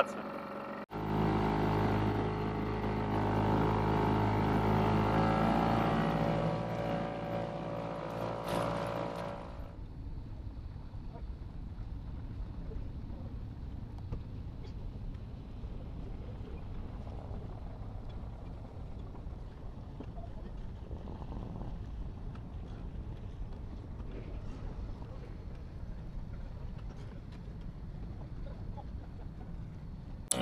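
Small outboard motor of an inflatable dinghy running under way, a steady engine tone. About ten seconds in it changes suddenly to a quieter, rough low rumble.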